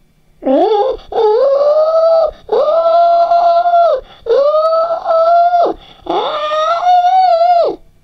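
A cartoon pig's cries: five high-pitched, drawn-out wails in a row. Each rises quickly and then holds level for about one to one and a half seconds, except the first, which is shorter. They are the cries of a pig being heated in a tank of water that is getting hot.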